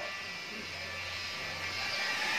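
Steady low background hum with a faint even hiss.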